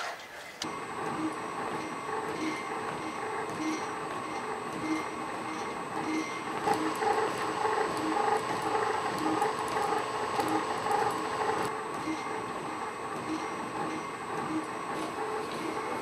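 Machinery of the Petman walking robot on its treadmill rig: a steady hum that starts about half a second in. A regular pulse, about one and a half beats a second, runs through it and keeps time with the robot's steps.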